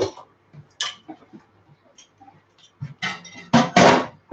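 Wooden breadboard being handled on a kitchen bench: a few small clatters, then a cluster of loud knocks near the end as it is set down.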